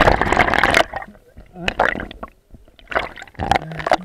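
Water sloshing and gurgling around an action camera held just under the surface, heard muffled through the water and housing. There is a loud churning rush in the first second, then shorter bubbling gurgles.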